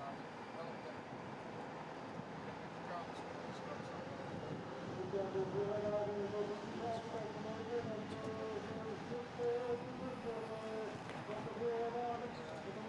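Wind noise over the microphone of a moving camera motorbike, with the motor's running note. The note gets louder and wavers in pitch from about five seconds in.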